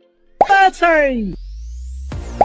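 Cartoon sound effects: two pitched 'bloop' sounds sliding down in pitch, about half a second and a second in, then a thin rising whistle-like tone.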